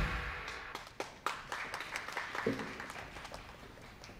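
Recorded pop backing track cutting off at the end of a song, then sparse, scattered audience clapping that thins out in the dark pause before the next song.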